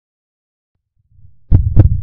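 Near silence, then a faint low rumble and, about one and a half seconds in, a heartbeat sound effect: a pair of deep thumps, lub-dub.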